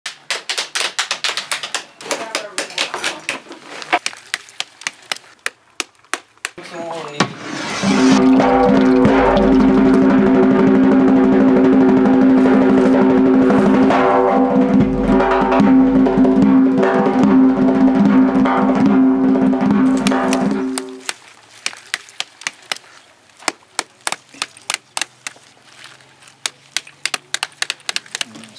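Rapid sharp taps and knocks from pomegranates being broken open and seeded into metal bowls. From about seven seconds in comes a loud passage of sustained music lasting some thirteen seconds, after which the tapping returns.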